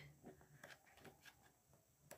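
Near silence, with a few faint soft ticks as pages of a paper pad are turned.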